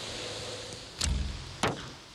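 A wooden recurve bow released: a low thump of the string about a second in, then the sharp knock of the arrow striking the target about half a second later.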